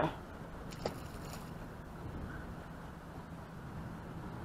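A bass boat's motor humming steadily at slow speed, with water moving against the hull. A short click sounds about a second in.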